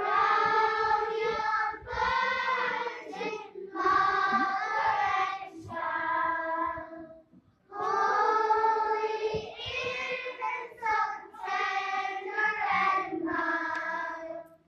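Children's choir singing in short phrases, with a brief pause for breath about seven seconds in.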